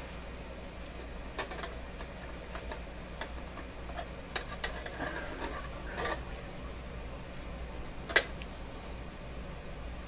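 Scattered light clicks and scrapes of a small stringing tool and dial cord working against a radio's metal chassis and dial drum, the sharpest click about eight seconds in. A steady low hum runs underneath.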